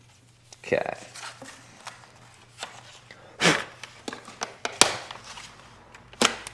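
Handling noise of window tint film being worked into a handheld tint meter: scattered rustles, taps and knocks of film and plastic, with a sharp click about five seconds in.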